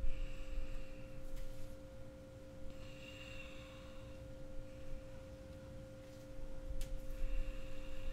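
A steady drone of two held pitches, one higher and one lower, sounding faintly under a low rumble.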